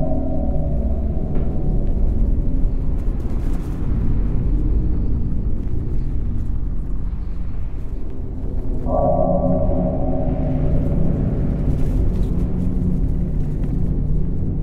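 Dark ambient drone music: a deep, steady rumble with a gong-like ringing chord that enters about nine seconds in and slowly fades.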